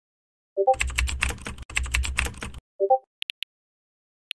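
Rapid computer-keyboard typing for about two seconds, set between two identical short three-note message chimes. The chimes mark a chat message going out and a reply coming in. Near the end come three light taps of a phone's on-screen keyboard.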